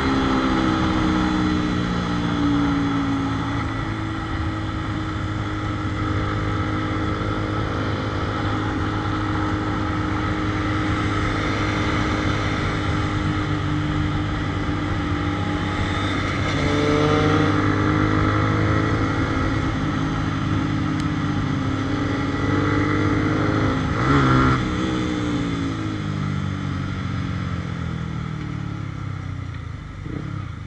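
Motorcycle engine running while the bike is ridden, its pitch dropping early on, climbing as it speeds up about halfway through, then falling steadily as it slows down near the end.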